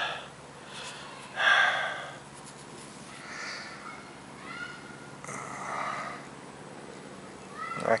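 A man's breathy exhalations close to the microphone, four short ones, the first the loudest.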